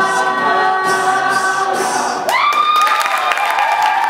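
A cappella vocal group holding a sustained chord, the end of the song, which cuts off a little over two seconds in. Audience cheering and applause then break out.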